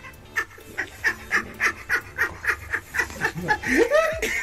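A person laughing in short, breathy, rhythmic pulses, about three or four a second, with a rising voiced sound near the end.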